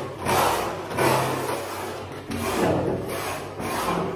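A steel plastering trowel scraping across wet cement-and-sand mortar as it smooths a wall patch, in several rasping strokes about a second apart.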